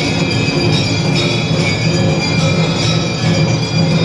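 Temple aarti bells ringing continuously over steady percussion beats, making a loud, dense clanging din with many overlapping metallic ringing tones.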